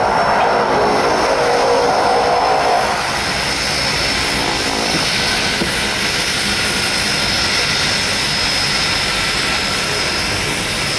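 Twin Pratt & Whitney PT6A turboprop engines of a DHC-6 Twin Otter floatplane running as it taxis on the water: propeller noise under a steady high turbine whine, a little louder for the first three seconds before settling.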